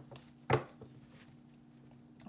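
A deck of tarot cards being shuffled by hand over a table, with a sharp knock of the cards about half a second in and faint small ticks after, over a low steady hum.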